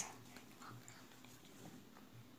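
Near silence: room tone, with a faint brief sound about half a second in.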